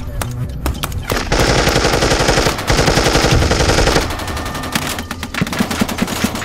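Sound effect of sustained automatic gunfire, many rapid rounds. It is densest and loudest from just over a second in until about four seconds, then thins to scattered shots.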